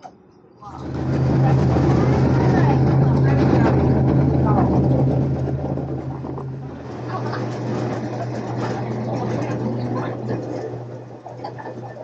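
Small ferry boat's engine starting to run under way with a steady low drone, which drops to a lower pitch and a quieter level about seven seconds in; voices are heard over it.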